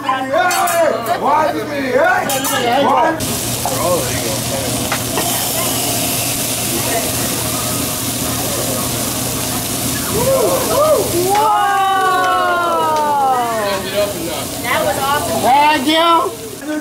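Food sizzling on a hot teppanyaki griddle, with a sudden loud hiss about three seconds in that holds for several seconds before easing. Laughter and voices come at the start, and a long falling exclamation comes near the end.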